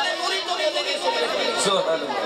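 Several people's voices talking over one another, a murmur of chatter.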